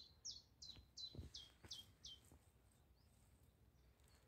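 A songbird singing, faintly, a steady series of short, high, downward-slurred notes about three a second; the song stops a little over two seconds in.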